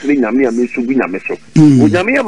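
Speech only: a man talking, with a falling pitch near the end.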